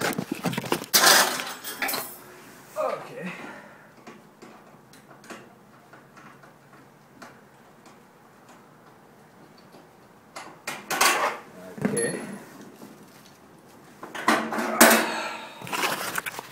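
Hard objects clinking and clattering in several separate bursts as things are handled and set down, with a quieter stretch of faint ticks and knocks in the middle.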